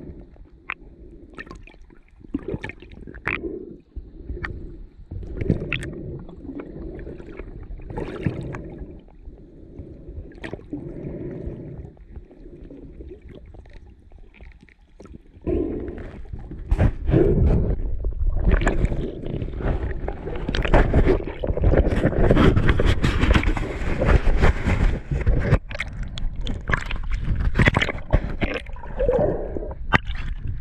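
Muffled underwater sound on a diver's camera, gurgling water with scattered clicks. From about halfway it turns into much louder rushing and sloshing water as the camera nears and breaks the surface.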